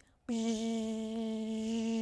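A boy's voice holding one steady, flat buzzing hum for about two seconds, a vocal sound effect.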